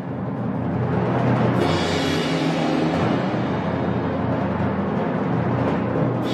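Orchestral music with the timpani played throughout, swelling over the first second or so, then holding loud and steady.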